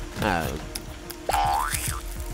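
Cartoon-style comic sound effects over light background music: a pitched tone sliding down early on, then a tone that holds and rises steeply just before the end.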